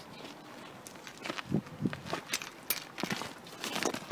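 Irregular footsteps and scuffing knocks, a few a second, starting about a second in, made by someone moving about on the stony riverbank.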